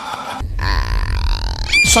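Cinematic horror sound effect: a deep low rumble with thin high tones comes in about half a second in. Near the end a rising sweep settles into a steady high tone.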